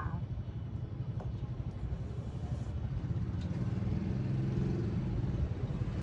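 Low motor-vehicle engine rumble that grows louder from about three seconds in, its pitch rising slightly and then holding, as of a vehicle passing on the street.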